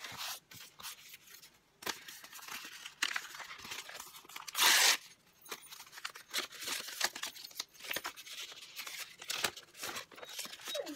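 Paper being handled and torn: strips of old sheet music rustling in the hands, with many short rasps and one louder rip about halfway through.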